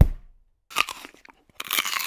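A deep thump, then a bite into a crisp apple with a sharp crunch about two-thirds of a second in, followed by a longer stretch of crunching chewing near the end.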